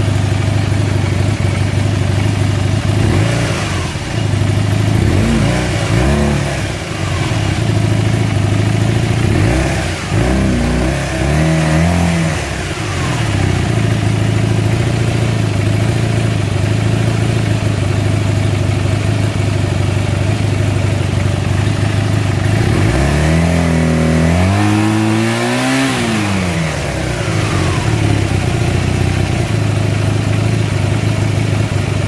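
Honda CB250N parallel-twin engine idling steadily off choke, blipped briefly a few times in the first half and revved higher once about 23 seconds in, each time falling back to idle. The carbs read as roughly in sync, but the owner still doesn't think it runs right and suspects mixture or jets.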